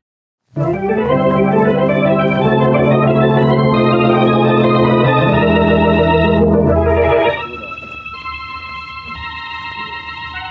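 Loud dramatic organ music: after a brief silence, organ chords build upward and are held, then cut off sharply about seven seconds in, and a quieter sustained organ passage follows. It is the organ bridge that marks the act break in an old-time radio drama.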